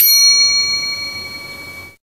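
A single bell-ding sound effect for the notification-bell click of a subscribe-button animation: a sharp strike followed by a bright ringing tone that fades away over about two seconds, then cuts off suddenly.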